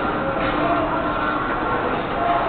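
Steady mechanical rumble of a running carousel.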